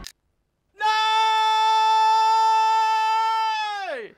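A voice singing one long, steady high 'aaah' note that slides down in pitch and breaks off near the end.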